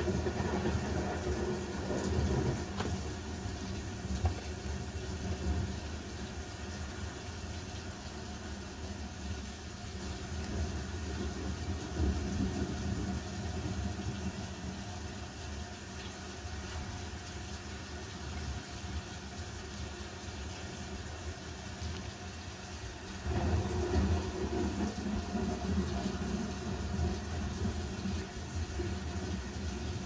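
A low, steady rumble that gets louder about 23 seconds in.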